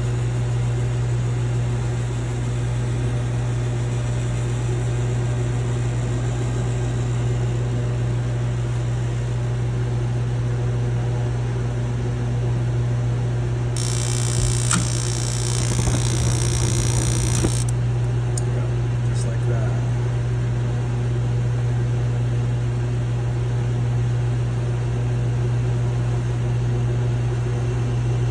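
Mr. Heater Big Maxx MHU50 gas unit heater running, its combustion air blower humming steadily. A little past halfway a loud rushing hiss, the gas burners lit, lasts about four seconds and cuts off suddenly, followed by a couple of faint clicks. The flame dropping out after a few seconds is the short-cycling fault the owner is chasing.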